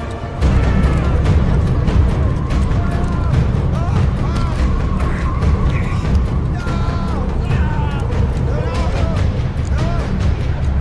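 Film sound mix of an airliner being wrecked in flight: a deep, steady rumble sets in suddenly about half a second in and holds, under the musical score and men's wavering cries.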